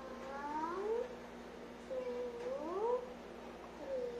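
A cat yowling: long, drawn-out meows, some dipping and rising again, others sliding upward in pitch, twice in a row.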